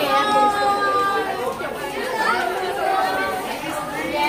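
Several people talking at once: overlapping chatter from a crowd of voices.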